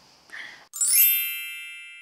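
A single bright, bell-like 'ding' chime sound effect, struck about three-quarters of a second in and ringing away over the next second, marking a section break.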